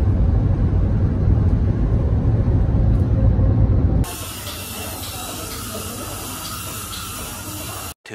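Steady low road rumble inside a moving car's cabin for about four seconds, then a sudden cut to a quieter, even hiss for the rest.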